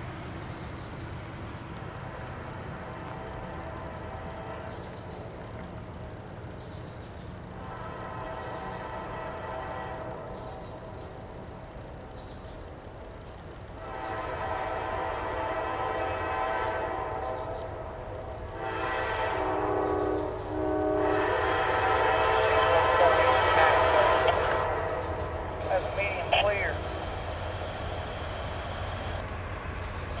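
Freight locomotive's multi-tone air horn sounding the grade-crossing signal as the train approaches: two long blasts, a shorter one and a final long one, growing louder. A steady low rumble from the oncoming train runs underneath.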